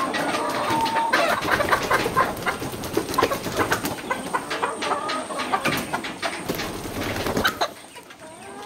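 Chickens clucking, with many short sharp clicks or taps throughout.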